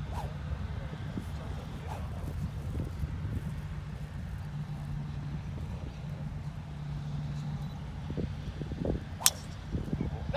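Golf club striking a teed-up ball on a tee shot: one sharp crack near the end, over a steady low rumble.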